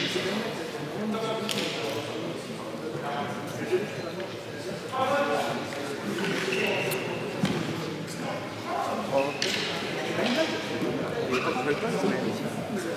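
Chestnut fighting canes of a canne de combat bout swishing and clacking in a few sharp cracks, the clearest about four seconds in, with low voices talking underneath in a large sports hall.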